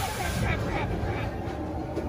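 Expedition Everest roller coaster train climbing its lift hill: a steady low rumble of the cars on the track, with faint riders' voices.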